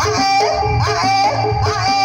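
Live Javanese jaranan gamelan music: a high melody that swoops and bends in pitch, over a steady low beat of drums.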